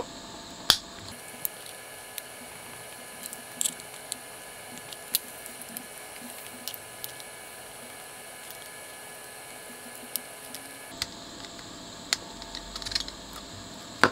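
Needle-nose pliers crimping the small metal tabs on a slide switch's sheet-metal frame, giving scattered small clicks and ticks over a faint steady hum. There is a sharper click about a second in and a quick cluster of clicks near the end.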